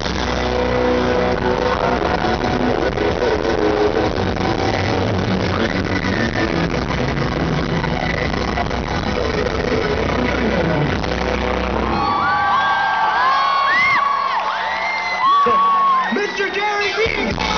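Live concert music with a loud crowd. About three quarters of the way through, the band's bass drops out and the crowd's cheering and whooping take over.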